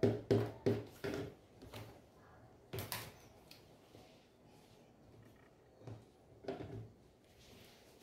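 A few short knocks and taps from a rotary cutter and a clear plastic ruler being handled and set down on a cutting mat. There is a cluster of taps at first, the loudest knock about three seconds in, and a few faint ones near the end.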